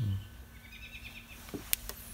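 Outdoor background chirping: a quick, high trill of about eight short notes in the middle, followed near the end by three sharp clicks, the second much the loudest.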